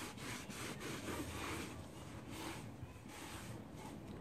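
A damp cloth rubbing back and forth over a painted wooden tabletop: soft, repeated wiping strokes, a few a second.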